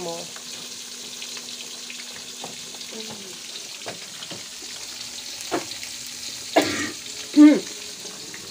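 Fish frying in hot oil: a steady sizzle with scattered small crackles and pops. Near the end come two short voiced sounds, the second the loudest moment.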